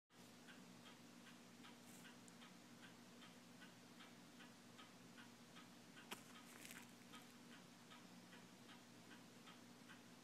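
Near silence: room tone with a low steady hum and faint, regular ticking about three times a second, plus one slightly louder click about six seconds in.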